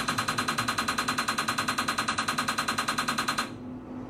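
NeuroStar TMS coil firing a rapid train of loud, evenly spaced clicks, about ten a second, which cuts off suddenly about three and a half seconds in. Each click is a magnetic stimulation pulse delivered to the head during a depression treatment.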